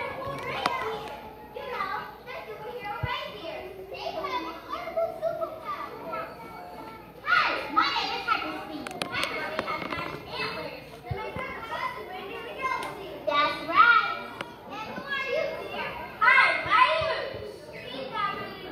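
Many children's voices talking and calling out over one another in a large hall, with louder surges about seven seconds in, near fourteen seconds and near the end.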